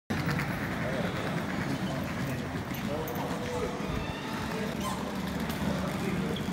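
Indistinct chatter of a crowd of people talking at once.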